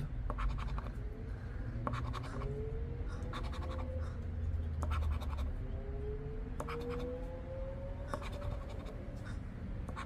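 A poker chip scratching the coating off a lottery scratch-off ticket in a run of short, quick strokes. Two faint, slowly rising tones sound underneath, one through the middle and one later on.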